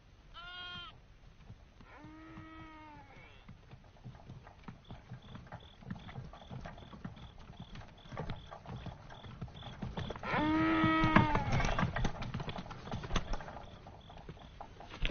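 Sheep bleating three times, the last and loudest bleat about ten seconds in. Crickets chirp steadily behind them, and a run of short knocks clatters through the second half.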